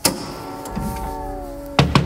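Heavy metal door swinging with its hinges creaking in long, slowly falling tones, then slamming shut with a loud bang near the end, followed by a low rumble.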